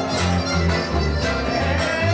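Live chamamé music: two accordions, a piano accordion and a button accordion, play a duet with long held melody notes over an acoustic guitar and a pulsing bass line with a steady beat.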